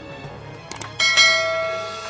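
Subscribe-button animation sound effect: two quick clicks, then a bright bell ding about a second in that rings on and slowly fades, over background music.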